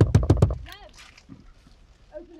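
A rapid run of about six loud thumps, a fist pounding on a car's side window and door, followed by a brief cry of a voice.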